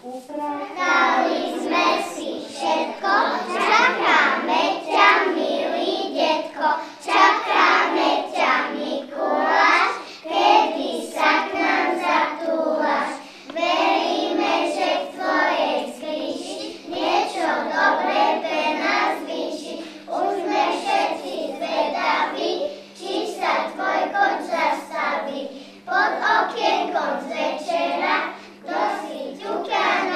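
A group of young children singing a song together.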